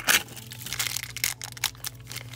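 Thin plastic wrapper around a small toy figure being crinkled and pulled open by hand: a dense flurry of crackles at the start, then scattered crinkles.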